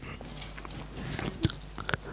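Low room tone in a pause between speech, with a few faint short clicks, the clearest about one and a half seconds in and just before the end.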